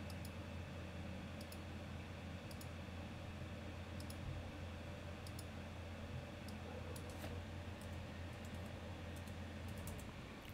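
Faint, scattered computer mouse and keyboard clicks as a trading order is entered, over a steady low hum.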